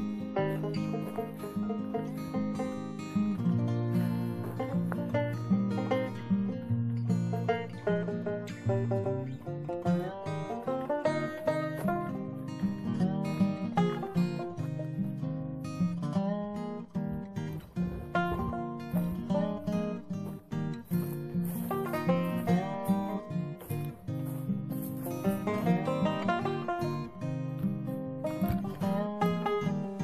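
Background music: acoustic guitar picking and strumming in a steady, upbeat rhythm.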